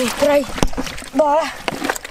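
Men talking in Thai, with a single sharp knock about two-thirds of a second in.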